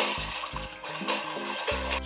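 A toy's small electronic speaker playing a splashing-water sound effect, over background music with a simple stepped melody.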